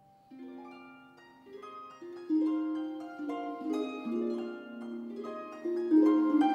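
Solo pedal harp: plucked notes begin softly just after the start, each ringing on, then grow louder and fuller from about two seconds in.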